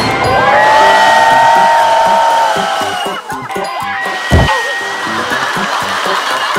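A group shouting and screaming in excitement over background music, with long held cries in the first couple of seconds. There is a sudden low thump about four seconds in.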